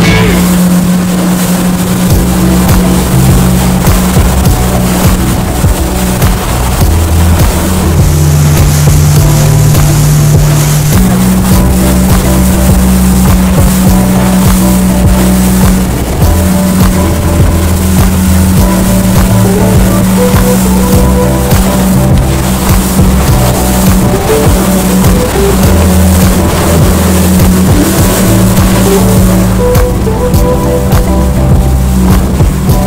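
Background music with a steady bass line that steps between held notes, laid over a motorboat running at speed with its wake rushing and splashing alongside.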